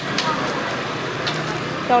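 Nem rán (Hanoi spring rolls) deep-frying in a pan of hot oil on a gas burner, a steady sizzle with a few small crackles, under background voices.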